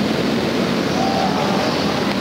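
A pack of small open-wheel dirt-track race cars running at speed, their engines blending into one steady, loud roar.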